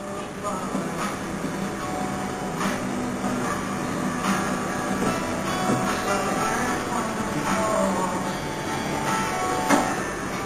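Busy pub ambience: a dense hubbub of indistinct chatter with background music and a few sharp clicks, like glasses or objects being set down.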